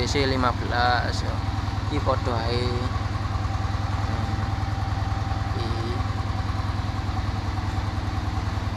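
An engine idling steadily with a fast, even low pulse, with a man's voice briefly over it near the start.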